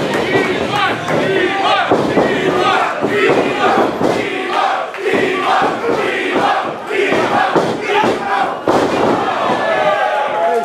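Small crowd yelling and cheering, many voices shouting over one another.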